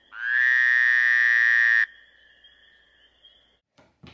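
A loud, harsh buzzing tone: it rises briefly, holds steady for about a second and a half and cuts off suddenly. A fainter high steady tone lingers until near the end. It sounds like an electronic buzzer-type sound effect.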